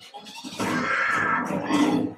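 A monster's guttural growling and grunting from a film soundtrack, starting loud about half a second in, over a fiery fight scene's effects and score.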